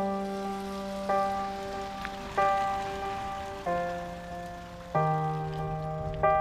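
Background piano music: slow chords struck about once every 1.3 seconds, each ringing and fading, over a steady hiss of rain.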